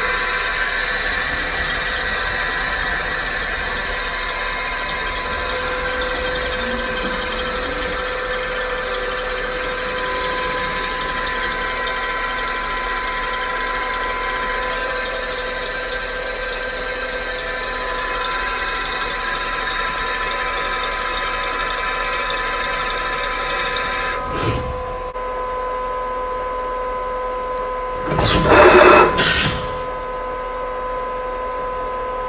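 Fanuc RoboDrill α-T14iA spindle running at about 1,600 rpm, a steady whine made of several fixed tones, which stops about 24 seconds in. Near the end comes a short, loud mechanical noise of a second or so with two peaks.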